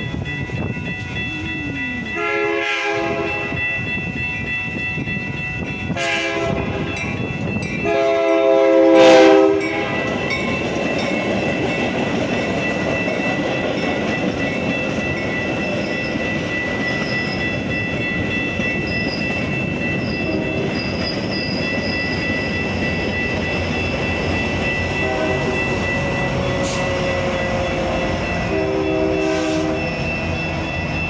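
Metra commuter train's horn sounding several blasts for the grade crossing, the longest and loudest ending about nine seconds in. Then the train rolls past over the crossing for about twenty seconds, wheels clattering on the rails, with a steady ringing from the crossing signal. Shorter horn notes sound again near the end.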